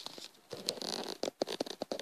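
Scratching, rubbing and clicking handling noise as the camera is moved around by hand, with small clicks and knocks of plastic Lego parts on a table.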